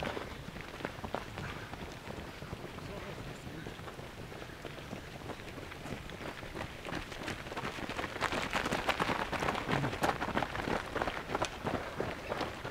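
Running footsteps of a group of runners on a gravel track, many overlapping crunching strides; louder and denser from about eight seconds in as a larger bunch passes close.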